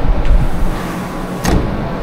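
Sliding glass door moving on its track with a low rumble, then a single sharp knock about one and a half seconds in as it meets the frame.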